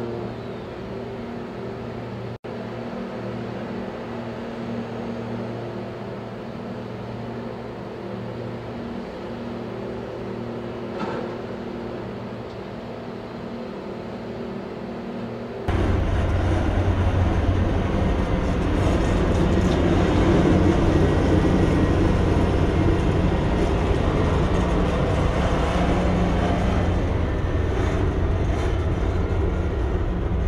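Steady low diesel engine hum of a harbour tug working at a container ship's bow, with a momentary dropout a couple of seconds in. About halfway it jumps to a louder, deeper rumble as the tug is seen close up churning wash.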